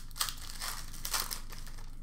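Crinkly trading-card pack wrapper being crumpled by hand, a dry crackling with two louder crunches, one just after the start and one a little past the middle.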